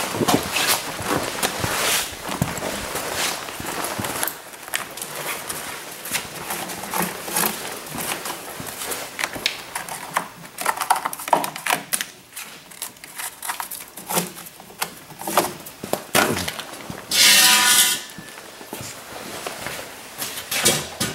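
Scattered knocks, clicks and clatter of tools and a metal straightedge being handled against a snowmobile's skis and track on a concrete floor. A brief, loud, pitched mechanical burst of under a second comes a little before the end.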